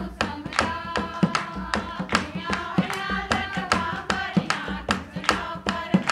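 A group of women singing a folk song in unison to a harmonium, with steady hand clapping at about three claps a second.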